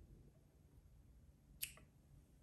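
Small scissors snipping the end off a hanging length of yarn: one short, sharp snip about a second and a half in, otherwise near silence.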